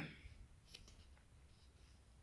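Near silence: room tone with a few faint clicks about three-quarters of a second to a second in.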